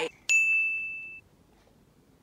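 A single bright ding sound effect, one clear ringing tone that holds for just under a second and then cuts off abruptly.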